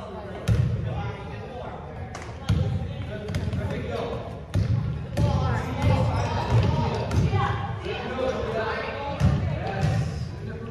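Basketball dribbled on a gym floor: a string of irregularly spaced bounces that ring in the hall. Voices of players and onlookers carry on underneath.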